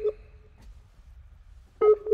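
Skype's outgoing-call connecting tone: short electronic beeps on one pitch. A burst fades out in the first half-second, then a quiet gap, then quick beeps start again near the end as the call is still connecting.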